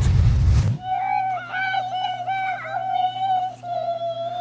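A short burst of loud rushing noise cuts off under a second in. Then a single voice holds one high, slightly wavering note for about four seconds over a low steady hum.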